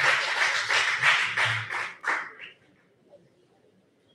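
Audience applauding, fading out about two and a half seconds in.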